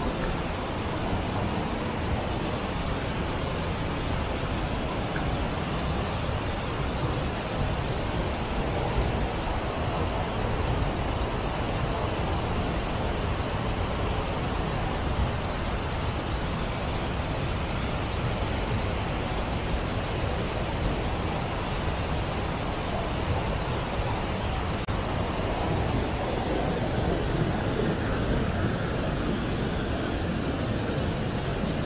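River water rushing over a low concrete check dam into the rocky channel below: a steady, even rush, growing slightly louder near the end.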